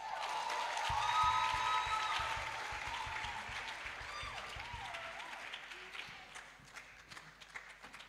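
Congregation applauding after a children's recitation, the clapping swelling in the first couple of seconds and then dying away toward the end.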